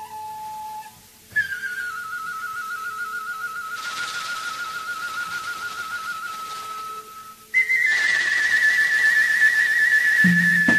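A flute-like wind instrument of a traditional Thai ensemble playing long held notes with a wide, fast vibrato, each note higher than the one before, with two short breaks between them.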